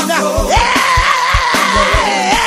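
Traditional gospel quartet song: a male singer's voice slides up about half a second in and holds one long high note with a slight waver, over a steady drum beat and bass.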